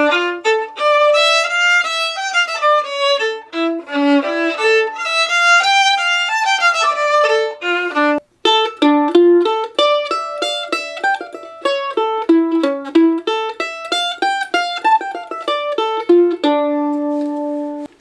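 A melody played on violin, bowed, for about eight seconds; after a short break, a melody on mandolin, picked with quick repeated strokes and ending on a held tremolo note.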